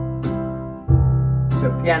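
Orla GT8000 Compact organ's automatic accompaniment playing an orchestral waltz rhythm, first variation: a deep bass note on each bar's downbeat with lighter piano chords on the other beats, in three-four time.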